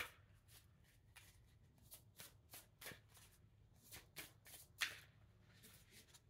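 A deck of oracle cards shuffled by hand, the cards sliding and slapping against each other in soft, irregular strokes, with one louder stroke about five seconds in. Faint overall.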